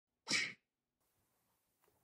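A single short, sharp burst of breathy human noise about a quarter second in, lasting about a third of a second.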